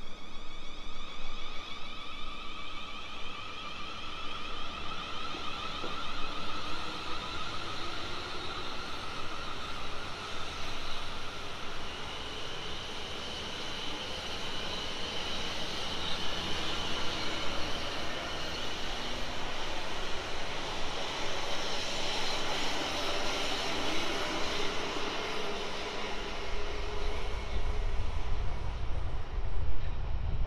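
South Western Railway electric multiple unit pulling out of the station, its traction motors giving a high whine that shifts in pitch as it gathers speed over the run of the wheels on the rails. A low rumble builds near the end.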